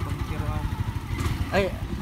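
Wind buffeting the microphone of a camera carried on a moving bicycle, an uneven low rumble. A short sharp sound comes about a second in, and a voice asks "motor?" near the end.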